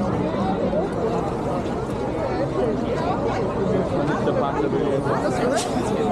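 Crowd chatter: many people talking at once, their voices overlapping into a steady babble with no single voice standing out.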